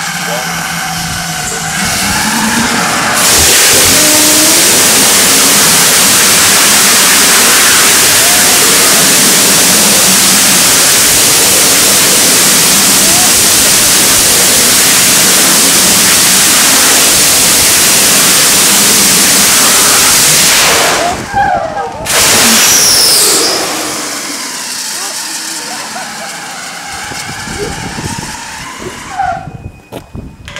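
Static test firing of a 5 kN bi-propellant rocket engine. It lights with a softer start, and about three seconds in it comes up to a loud, steady rushing roar of full thrust that holds for about eighteen seconds. It then cuts off suddenly, gives one brief second burst, and fades into a quieter hiss.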